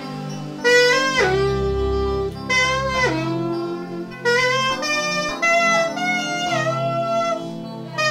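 Little Sax, a keyless plastic mini saxophone with a single reed, playing a slow, sweet melody over a backing track of soft sustained chords. The melody comes in about a second in, with several notes sliding down into the next.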